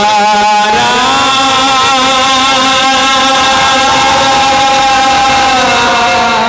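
A man singing one long held note with a slow vibrato, through a microphone and PA. The note steps up about a second in and is held until near the end, where it drops.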